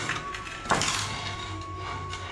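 A single sharp crack about two-thirds of a second in, as a steel chisel prises an old ceramic tile off a masonry altar step. The tile pops off whole because the old mortar behind it never bonded. Background music plays under it.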